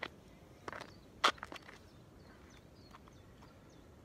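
Footsteps close to the microphone: a few sharp steps in the first two seconds, the loudest just over a second in, then only faint outdoor background.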